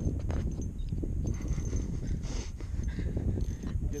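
Wind buffeting the microphone in a steady low rumble, with scattered faint clicks and knocks.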